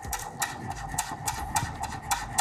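Chef's knife slicing green onions on a wooden cutting board: quick, even taps of the blade striking the board, about five a second.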